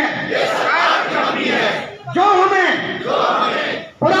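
A crowd of people reciting a pledge together in unison, loud and spoken rather than sung, in two phrases of about two seconds each.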